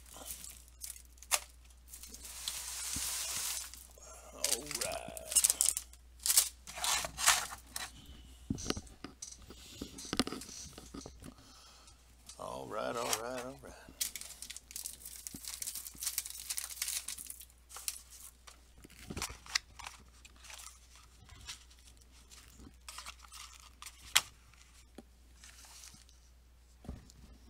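Packaging on a box of trading cards being torn and crinkled open by hand: short tearing and rustling noises, on and off, with quiet gaps between.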